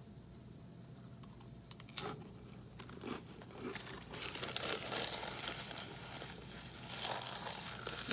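Paper napkin crinkling and rustling as hands are wiped on it, a dense crackle from about halfway through. Before that, a few short crunches of a cracker being chewed.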